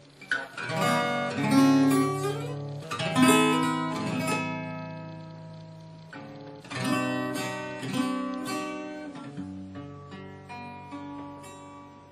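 Solo acoustic guitar playing chords, each struck and left to ring out, with single picked notes between the strums. The playing is quieter near the end.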